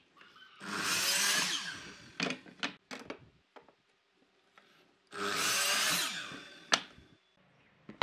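Makita miter saw making two crosscuts through a pine board, each cut lasting about a second and a half, with knocks of the board being shifted against the fence between them and a sharp click just after the second cut.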